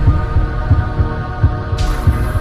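Logo-intro sound design: a sustained electronic drone with low bass pulses recurring a few times a second, and a whoosh swelling in near the end.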